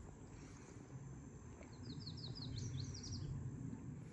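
A small songbird singing one quick run of about ten short, high chirps, starting about two seconds in, over a low steady rumble of outdoor background noise.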